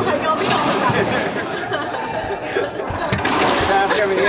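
Indistinct chatter of voices on and around a racquetball court between rallies, with a single sharp click about three seconds in.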